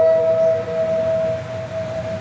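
Daegeum, the large Korean bamboo transverse flute, holding one long note that slowly fades. It is the closing note of the piece.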